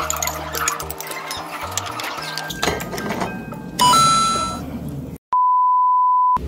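Edited-in sound effects over background music: music with sustained bass notes, then a bright two-note electronic chime stepping up in pitch about four seconds in. After a brief dead silence, a steady single-pitch electronic beep starts shortly before the end.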